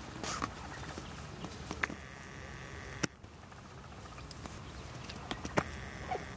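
Steady low outdoor background with a few scattered sharp clicks, the sharpest about three seconds in.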